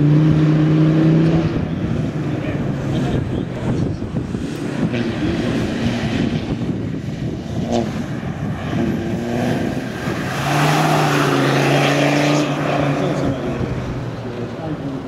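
Land Rover Defender 90's Td5 five-cylinder turbodiesel engine pulling under load as the car laps a dirt track. The engine note rises slightly and is loud at the start, fades in the middle, and comes up loud again from about ten seconds in, with a rush of noise over it.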